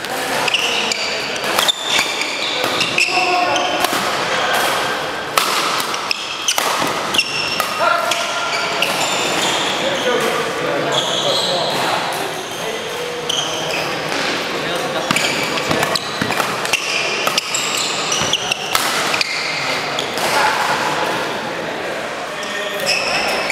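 Badminton doubles rally: sharp racket hits on the shuttlecock at irregular intervals, mixed with short high squeaks of court shoes on the hall floor, over a background of voices echoing in the hall.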